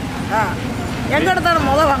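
A woman speaking in Tamil, with the low steady hum of a vehicle engine running underneath that grows louder near the end.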